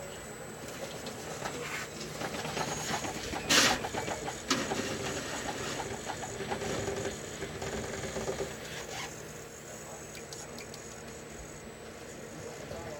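Small electric motor and gears of an RC rock crawler's winch whirring as it pulls the truck up onto another RC car's body, with one sharp knock about three and a half seconds in; the whirring fades out near the end.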